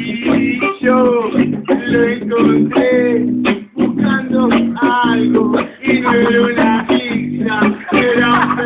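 Music with strummed guitar chords and a bass line, with a melody over it that slides up and down in pitch.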